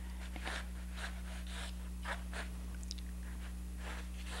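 Faint, irregular scratching of a sketching tool drawing lines on a stretched canvas, over a steady electrical hum.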